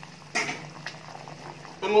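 Spiced biryani water with green peas bubbling at a hard, rolling boil in an aluminium pot: a low, steady bubbling.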